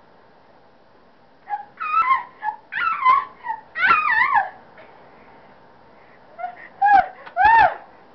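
High-pitched shrieks and squeals from a girl startled by a small child, a burst of several rising-and-falling cries starting about a second and a half in and two more near the end.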